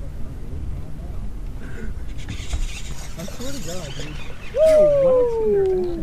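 A man's wordless excited vocalising: a few warbling hoots, then a long holler that falls steadily in pitch, starting about four and a half seconds in and the loudest sound here.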